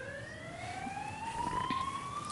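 Emergency vehicle siren wailing: its pitch bottoms out at the start and then rises slowly and steadily, fairly faint under the open-air room tone.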